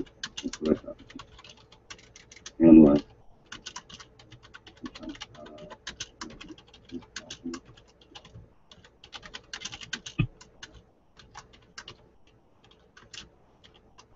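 Typing on a computer keyboard: irregular runs of quick key clicks, with a brief burst of voice about three seconds in.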